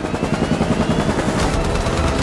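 Helicopter in flight: rapid rotor chop with a rising whine near the start.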